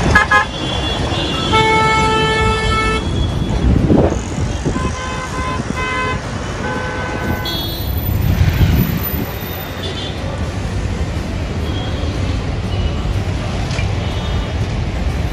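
Busy city road traffic with car horns honking: one long honk about one and a half seconds in, then several short honks around the middle, over a steady rumble of engines and tyres.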